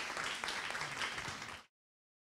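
Audience applauding, a dense patter of many hands clapping that cuts off suddenly near the end.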